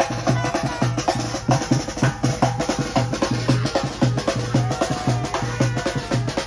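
Street brass band playing: trumpet notes over a big drum and other drums beating a fast, steady rhythm of about four strokes a second.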